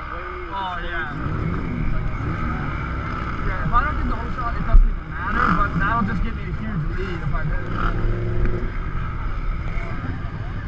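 Several side-by-side engines idling and revving up and down in a crowded staging area, with voices mixed in. There is a single low thump about five seconds in.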